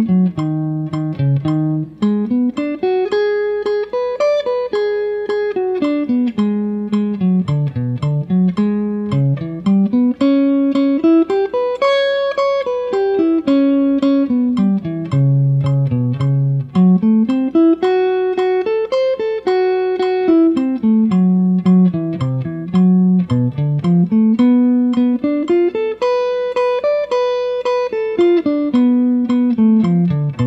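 Telecaster-style electric guitar playing single-note half-diminished (minor seven flat five) arpeggios in one fretboard position, each arpeggio climbing and falling over a few seconds. The arpeggios move from root to root through the circle of fourths.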